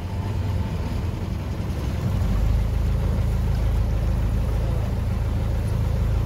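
Motor of a shikara tourist boat running steadily as it moves along the canal, a low rumble that grows stronger about two seconds in.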